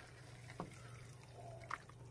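Thick cream sauce being poured over cooked penne pasta in a pot, a faint soft pour with two small clicks.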